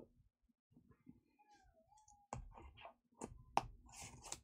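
Quiet clicks and light knocks of a shrink-wrapped card booster box being handled and lifted, starting a little over two seconds in, the sharpest click about three and a half seconds in. Before that, near silence with a faint brief gliding whine.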